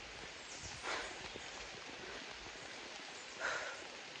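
Steady soft hiss of light drizzle in a rainforest, with two brief rushes of noise, one about a second in and one near the end.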